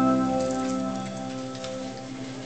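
Electric keyboard holding a sustained chord that slowly fades, over a light hiss.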